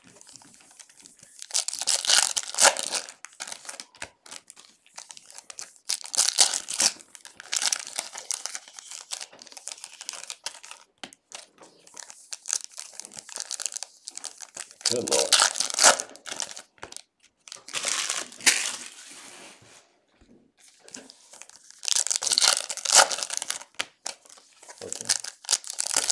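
Foil wrappers of 2020 Panini Optic football card packs crinkling and tearing as they are handled and ripped open by hand, in repeated short bursts.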